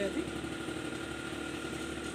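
An engine idling steadily: a low, even drone with no change in pitch.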